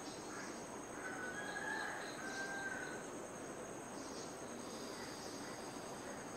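Steady high-pitched insect trill, likely crickets, with faint bird calls about a second in.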